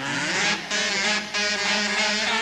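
A kazoo ensemble playing a swing big-band tune, several kazoos buzzing together in harmony, with two short gaps between phrases.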